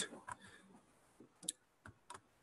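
A few faint, sparse clicks of computer keyboard keys, the sharpest about a second and a half in, as keyboard shortcuts are pressed to switch windows.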